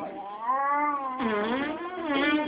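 A baby of about nine months vocalizing in long, drawn-out, cat-like cries whose pitch rises and falls, with a dip in pitch about one and a half seconds in.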